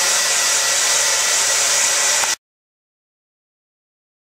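Handheld hair dryer running steadily, a continuous rush of air with a thin steady whine, drying hair set in brush rollers. It cuts off suddenly a little over two seconds in.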